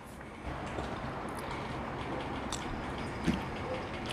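Faint chewing and small mouth clicks from a person eating a mouthful of enchilada with her mouth closed, over a steady background hiss.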